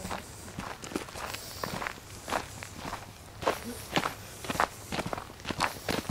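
Footsteps walking on a dry dirt trail strewn with fallen leaves, at a steady pace of about two steps a second.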